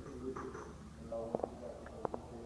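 Faint indistinct voices of people talking in the background of a showroom, with two short sharp clicks close together past the middle.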